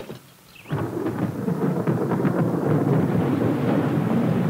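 A rainstorm: heavy rain with a low rumble of thunder, starting suddenly about three-quarters of a second in and then holding steady.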